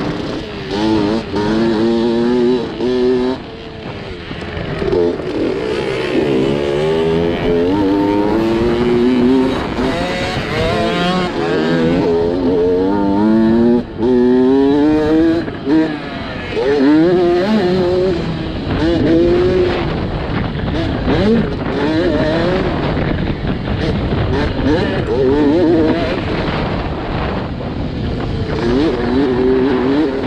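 Dirt bike engine heard from on the bike while racing round a motocross track, revving hard: its pitch climbs through each gear and drops back at every shift, several times in a row, then eases and picks up again through the corners.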